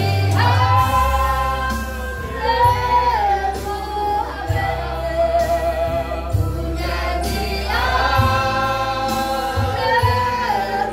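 A congregation singing a slow worship song together, accompanied by acoustic guitar, with long held notes over a steady low bass.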